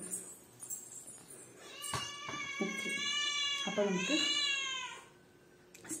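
A cat meowing: two long meows between about two and five seconds in, the second arching up and then down in pitch.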